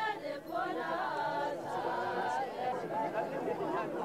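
A group of mourners singing a chant together, many voices overlapping with wavering pitch.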